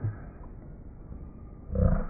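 A cartoon clown's sneeze, pitch-shifted down so it sounds deep and growly. A short low sound comes at the start, and a loud, deep vocal burst comes near the end.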